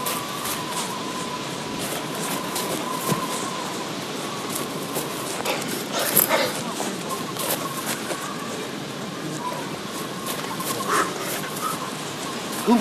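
Footsteps of people jogging on dry grass, passing close by, over a steady outdoor hiss, with a louder cluster of steps about six seconds in.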